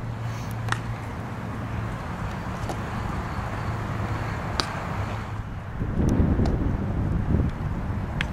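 Wind buffeting the microphone over a low steady hum. A few sharp clicks cut through it, the loudest about four and a half seconds in, which fits a thrown baseball smacking into a glove. The low buffeting grows louder near the end.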